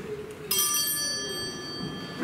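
A small bell struck once about half a second in, its high, bright ring fading slowly.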